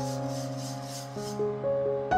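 Soft background music of sustained instrumental notes that change every half second or so. Underneath, in the first half, a faint rhythmic swishing of a wire whisk stirring thick semolina custard in a metal pan.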